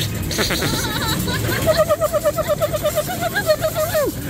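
Spider-Man coin pusher arcade machine in its rapid-shot bonus: an electronic warbling tone repeats rapidly from about a second and a half in, over scattered clicks and arcade din.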